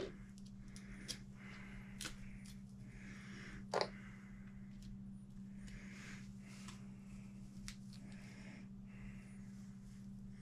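A few light clicks and taps of small parts and tools being handled on a workbench, the sharpest about four seconds in, over a steady low hum.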